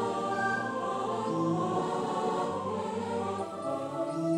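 Synthesizer music: slow, sustained choir-like chords that change every second or two.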